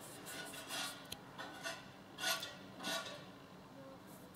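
Faint, soft rubbing strokes, about four of them, as a fingertip picks up powder eyeshadow from a palette pan and rubs it onto the back of a hand as a swatch.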